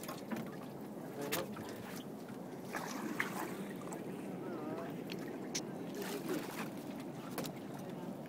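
Sea water lapping and sloshing around a small open fishing boat, with a few short sharp knocks.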